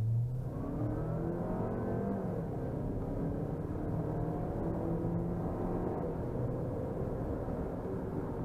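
2018 Geely SUV's engine under full-throttle acceleration in normal drive mode, heard from inside the cabin. The engine note climbs in pitch and drops back as the automatic gearbox shifts up, several times.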